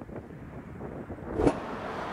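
Low steady rush of a river in spring flood carrying drifting ice. About one and a half seconds in comes a short thump, and after it the sound turns to a brighter, wider hiss.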